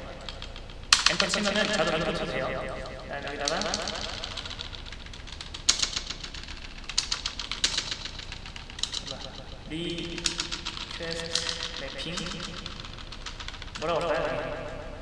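Computer keyboard being typed on: irregular key clicks, in short runs and single presses, while code is entered.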